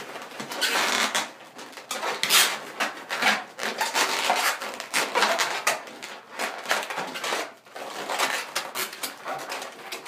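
Latex modelling balloons rubbing and squeaking against each other and against hands as they are wrapped, tucked and tied, in an irregular run of squeaks and rustles.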